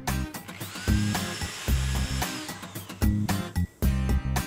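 Corded electric drill spinning up with a rising whine and then boring through PVC pipe for about a second and a half. Funky background music with a bass line plays throughout.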